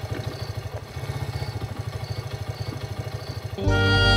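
Small motorcycle engine idling with a steady, rapid putter. Music comes in loudly just before the end.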